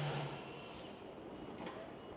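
Quiet background noise with a low steady hum that fades out about half a second in, leaving a faint even hiss.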